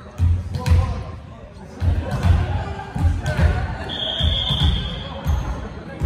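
Volleyballs striking hands and the wooden floor of a gym hall: deep thumps in pairs, a pair about every second, with a steady whistle blast of about a second just after four seconds in. Voices carry in the background.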